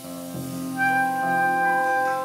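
Live jazz band playing an instrumental passage: a saxophone holds a long note, entering just under a second in, over piano and double bass.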